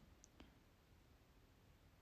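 Near silence: room tone, with two faint clicks in the first half second.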